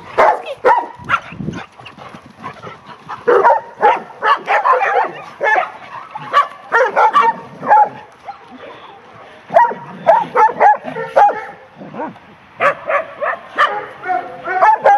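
Dogs barking and yipping in short, quick runs while playing together, with brief lulls between the runs.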